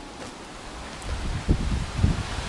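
Rustling of small-leaved honeysuckle branches as a hand moves through the foliage, over a steady hiss of wind on the microphone, with a dull thump about one and a half seconds in.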